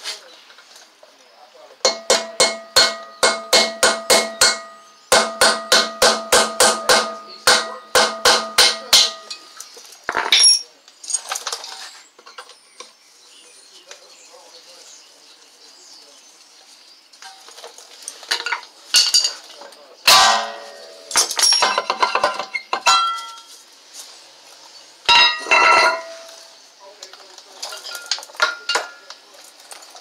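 Rapid metal-on-metal blows, about four a second in three runs, each ringing with the tone of the steel brake rotor as it is struck to break it or its retaining screw free. Later come scattered clanks and knocks of metal as the freed rotor is worked off the hub.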